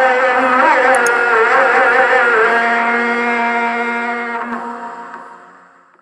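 Tarhim, the Ramadan chant sounded from the mosque at sahur time, sung by a single voice in long, wavering, ornamented notes. It fades out steadily over the last two seconds to silence.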